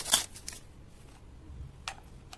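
Plastic wrapper of a Cadbury Gems packet crinkling as it is torn open by hand, with a burst of sharp crackles in the first half second, then quieter handling and one more crackle near the end.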